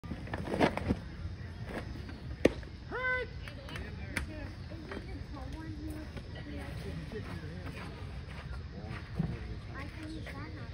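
Outdoor ballfield ambience of distant players' and spectators' voices, broken by a sharp pop about two and a half seconds in and a short shout about half a second later, with a few fainter knocks.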